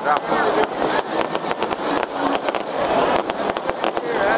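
Fireworks popping and crackling in quick, irregular succession, mixed with the voices of people nearby.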